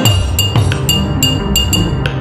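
Instrumental hip-hop beat with no vocals: a bright, ringing percussion hit repeating about four times a second over a deep bass.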